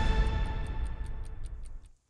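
News bulletin title music with a clock-like ticking beat, about five ticks a second, fading out near the end.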